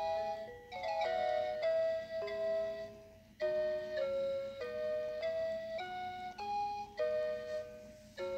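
Animated toy Ferris wheel playing its built-in electronic tune, a simple melody of held notes with a brief pause about three seconds in.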